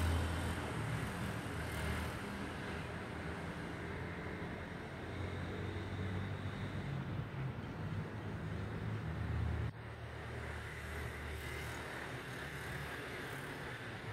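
Steady rushing of river water with wind rumbling on the microphone; the level drops abruptly about ten seconds in.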